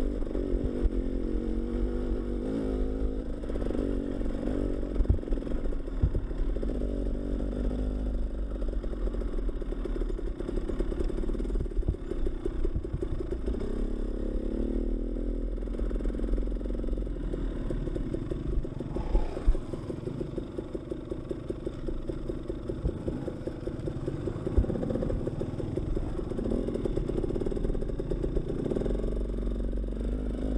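Dirt bike engine running at low trail speed, its pitch wavering up and down with the throttle. Scattered knocks and rattles from the bike over the rough dirt trail, the loudest a little past halfway.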